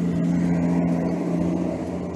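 A motor vehicle's engine running steadily nearby, a low even hum with a noisy rumble, picked up by the field reporter's microphone.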